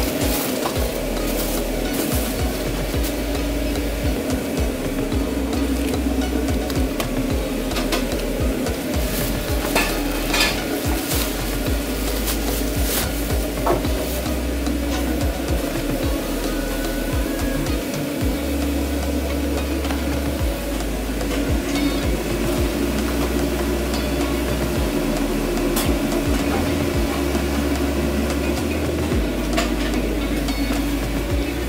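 Food-truck kitchen at work: a steady hum under sizzling from the griddle, with scattered clicks and clatters of utensils and takeout containers.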